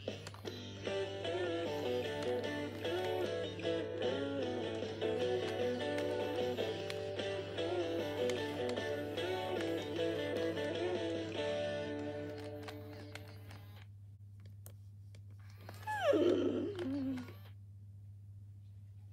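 Animatronic FurReal Friends Cinnamon pony toy playing its electronic tune through its small built-in speaker, which fades out after about thirteen seconds. Near the end the toy gives one short horsey sound effect that falls steeply in pitch.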